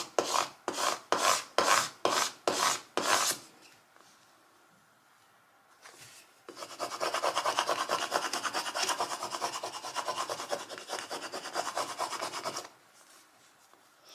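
A scraper tool rubbed hard over clear transfer paper on a wooden sign board, burnishing vinyl lettering down. It makes a series of separate strokes, about two a second, then stops for about three seconds. It then goes into about six seconds of fast back-and-forth scrubbing.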